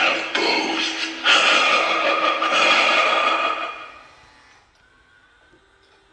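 An 8 ft animatronic Boogeyman Halloween prop playing its sound effects through its built-in speaker: a drawn-out, voice-like sound that fades away about four seconds in, leaving only faint room sound.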